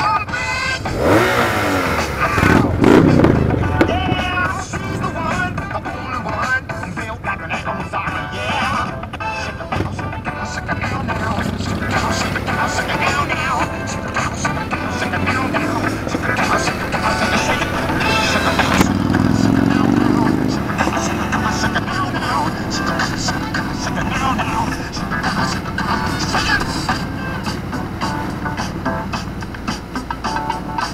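A song with vocals plays over motorcycle engines pulling away in traffic. An engine note falls in the first few seconds, and rising engine notes come as the bikes accelerate, strongest about two-thirds of the way through.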